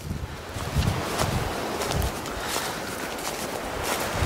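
Footsteps and rustling through dry leaf litter and brush, with wind buffeting the microphone in irregular low gusts.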